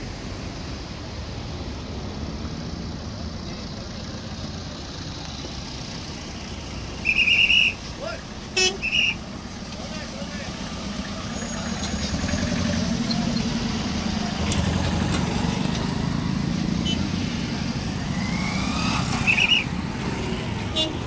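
Road traffic on a bridge: vehicle engines and tyres running steadily, with horns honking: one honk about seven seconds in, two quick toots a second later, and another short honk near the end. The traffic noise grows louder in the second half as heavier vehicles pass close by.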